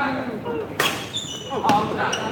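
Badminton rally: two sharp racket hits on the shuttlecock, the first about a second in and the second just under a second later, with short high squeaks of shoes on the court floor.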